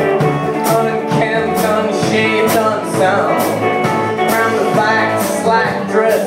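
A live rock trio playing: electric guitar and bass guitar over a drum kit, with cymbal hits keeping a steady beat.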